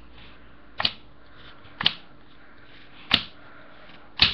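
Yu-Gi-Oh! trading cards slapped down one at a time onto a playmat: three sharp snaps about a second apart.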